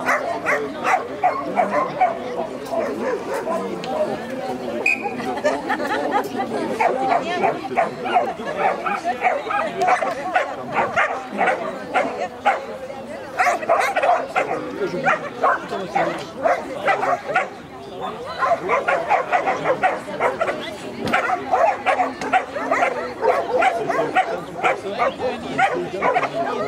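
A dog barking over and over in short barks, with a brief lull about eighteen seconds in, over people talking.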